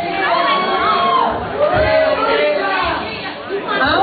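A woman speaking into a handheld microphone, with audience chatter behind her.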